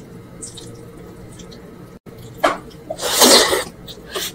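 Close-miked mouth sounds of someone eating mansaf (lamb and rice in jameed sauce) by hand: a short wet mouth noise about two and a half seconds in, then a louder noisy one lasting under a second.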